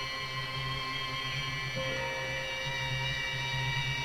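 Music of long held notes over a steady low drone, with the chord changing once about two seconds in.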